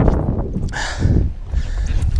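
Wind buffeting the microphone on an open boat: a steady low rumble, with a short rushing hiss a little under a second in.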